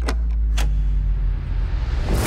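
Sound-effect snap of a KitKat wafer finger breaking: a few sharp cracks in the first second over a deep, steady low drone.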